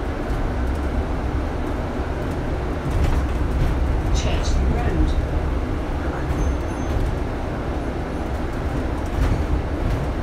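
Double-decker bus running along the road, heard from the upper deck: a steady low engine and road rumble, with a few brief high-pitched squeaks about four to five seconds in.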